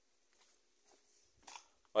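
Mostly quiet, with a few faint footsteps and scuffs on stone paving and one short, slightly louder scuff about one and a half seconds in. A man's voice starts right at the end.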